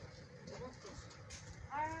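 Faint, indistinct voices of people talking outdoors, with a louder man's voice starting to call out a greeting near the end.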